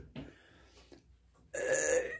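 Near silence for about a second, then a short, steady vocal sound from a man near the end, a held non-word sound or burp in the pause before he speaks again.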